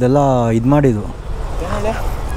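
A man's voice for about the first second, then the low, steady rumble of a motorcycle engine running at low speed.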